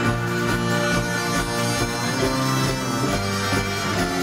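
Live folk-rock band playing an instrumental passage with no singing: a trumpet playing held notes over banjo and upright bass, with a steady low beat underneath.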